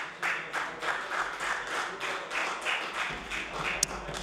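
Applause: hands clapping in a steady, even rhythm of about four claps a second.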